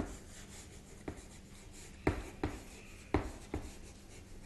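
Chalk writing on a chalkboard: faint scratching strokes with about six short, sharp taps as the letters are formed.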